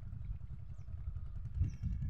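Wind buffeting a phone's microphone outdoors: a steady, low, fluttering rumble.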